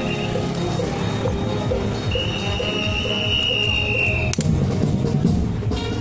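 Music with a steady, quick beat. About two seconds in, a single high note is held for about two seconds, sinking slightly, and ends with a sharp click.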